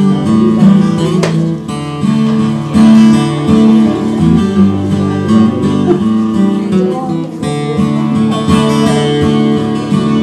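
Solo acoustic guitar strumming chords as the instrumental introduction to a song, before the vocals come in.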